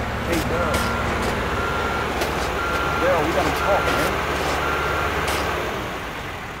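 Construction machine's reversing alarm beeping about once a second over a steady engine rumble, with a few sharp knocks.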